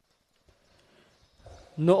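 Near silence with a few faint clicks, then a man's voice begins speaking loudly near the end.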